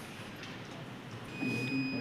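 Quiet room tone, then about a second and a half in an Arduino security alarm's buzzer starts a steady high-pitched tone, the sign that its PIR motion sensor has become active and is calibrating.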